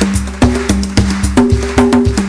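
Live band playing an instrumental rumba passage: sharp, quick percussion hits over a stepping bass line, with no singing.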